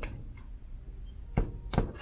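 Scissors snipping through a wooden toothpick to cut off its point: two sharp snaps about a third of a second apart, the second the louder.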